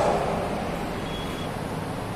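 Steady, even background noise with no speech, at a moderate level. A faint brief high tone comes about a second in.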